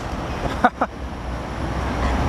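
F450 quadcopter's motors and propellers running as it comes down in a hard landing, with two short sharp sounds about a fifth of a second apart a little after half a second in.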